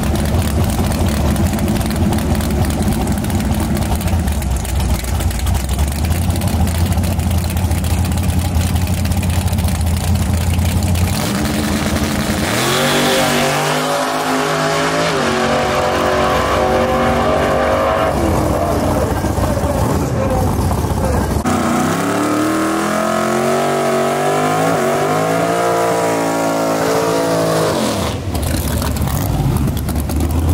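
Street drag cars' engines: a steady low idle for about the first eleven seconds, then an engine revving and accelerating hard with its pitch climbing, and a second rising run of engine sound later on before a low idle returns near the end.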